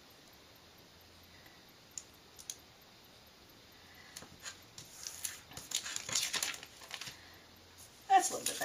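Thin clear plastic pocket sheet crinkling and crackling as washi tape is handled and pressed down along it by hand. The first half is mostly quiet with a couple of small clicks; a run of crackly rustles comes in the second half.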